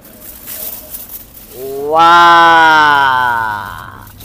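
A long, drawn-out voiced call, an amazed 'wooow' or 'ooh', lasting about two seconds. It swells up in pitch, holds steady and then sags slightly as it fades.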